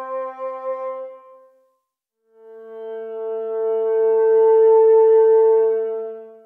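Synthesized cello patch in Surge XT, played from an MPE controller: a soft sustained note fades out about a second and a half in. A second sustained note enters just after two seconds, swells louder and fades near the end.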